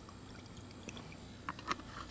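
Brake fluid being poured from a bottle onto crushed chlorine tablet, a faint trickle, with a couple of light clicks about one and a half seconds in.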